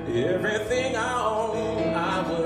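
A man singing a soulful ballad phrase: his voice swoops up at the start, climbs through a run of notes and ends on a held note with vibrato, over sustained instrumental accompaniment.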